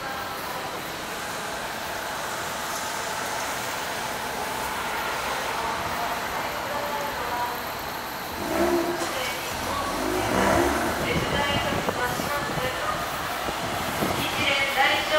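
City street ambience: a steady hum of traffic. About eight and a half seconds in, people's voices join it along with a low rumble.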